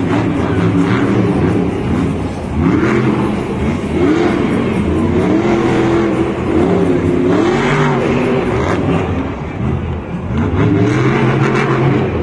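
Monster truck's supercharged V8 revving hard, its pitch rising and falling again and again as the truck is thrown around the dirt.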